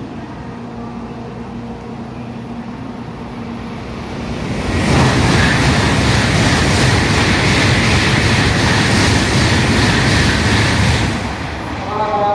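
A Shinkansen train running past the platform at speed: a loud, steady noise of wheels and air comes up about four seconds in, holds for about six seconds, then drops away near the end. Before it, a low steady hum.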